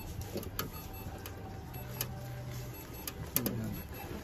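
Faint scratching and scattered light clicks of a pen writing on a paper chart, with a brief low hum about two seconds in.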